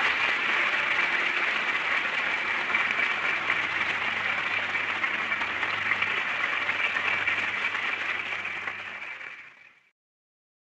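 Studio audience applauding steadily at the close of a 1941 radio broadcast, heard on an old, band-limited recording, fading out to silence near the end.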